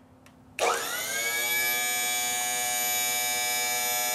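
Power Gear leveling system's electric hydraulic pump motor starting about half a second in, its whine rising briefly in pitch and then running steady as it drives the jacks through a full retraction, part of purging air from the hydraulic lines.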